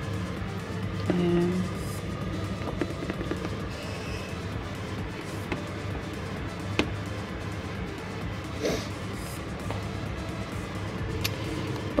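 Background music playing at a steady, moderate level, with a few light clicks.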